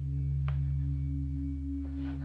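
Low, steady droning tones from a film soundtrack, several pitches held together without change. A short faint click comes about half a second in.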